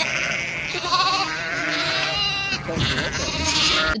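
Lambs bleating, several separate calls overlapping, over a steady background noise from the yard.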